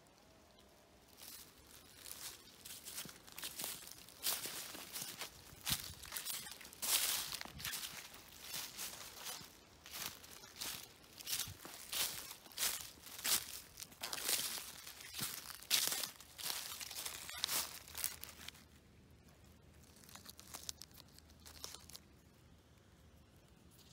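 Footsteps crunching and rustling through dry fallen leaves, one step after another at a steady walking pace, stopping a few seconds before the end.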